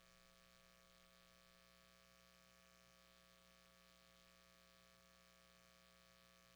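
Near silence: a faint, steady electrical hum with light hiss.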